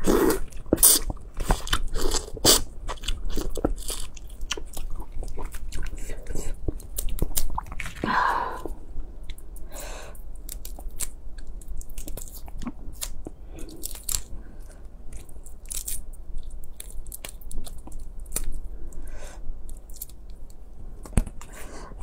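Close-miked eating of whole cooked red prawns: biting into the prawn heads, shell cracking and peeling, and chewing, heard as a steady run of short wet clicks and crunches. A brief vocal sound comes about eight seconds in.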